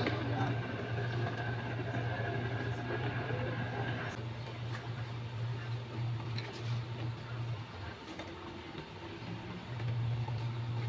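Kitchen sounds at the stove: a steady low hum runs under light knocks and rustling as tomato slices and water spinach leaves go into a simmering pot of sinigang. A thin higher tone stops suddenly about four seconds in.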